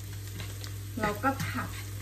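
Laab chili paste sizzling in hot oil in a nonstick frying pan, stirred with a wooden spatula, over a steady low hum.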